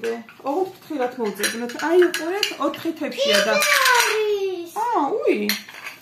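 Small ceramic plates clinking against each other as they are handled and stacked, with voices talking over the clinks throughout.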